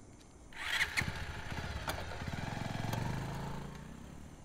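A motorcycle engine starts about half a second in and runs with a fast, even firing beat. Its note rises as it revs, then fades away near the end.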